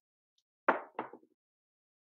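A pair of dice landing: two short, hard clacks about a third of a second apart, about two thirds of a second in.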